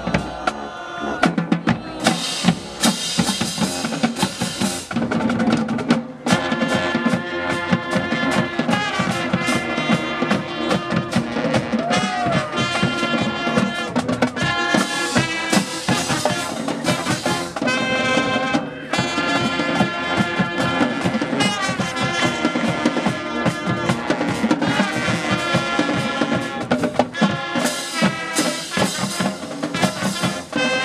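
Marching band playing on the field: trumpets, sousaphones and clarinets in sustained chords over a busy drumline beat with bass drums.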